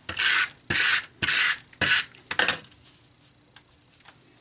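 Hands rubbing and sliding paper and a photo against cardstock: about five quick, loud rasping strokes in the first two and a half seconds, then it stops.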